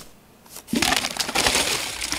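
Pringles chips poured out of the can into a trash bin: a dense, crackly rattle that starts about two-thirds of a second in.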